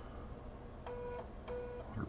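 3.5-inch 1.44 MB USB floppy drive finishing the verify pass of a format, with a low steady hum. Two short buzzes from the head stepping come about a second in and again half a second later, each about a third of a second long.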